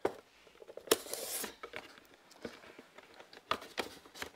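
Cardboard product box handled on a tabletop: the outer sleeve slid back over the box with a scraping rustle about a second in, then a few light knocks and taps as it is set down.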